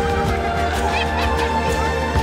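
Background music: sustained chords over a steady beat, with a few short high notes about a second in.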